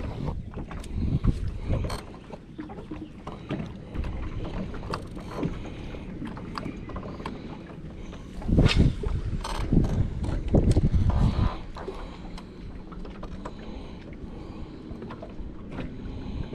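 Wind buffeting the microphone in gusts, strongest for a few seconds past the middle, over small clicks and ticks from a spinning reel being handled and wound during a cast and retrieve.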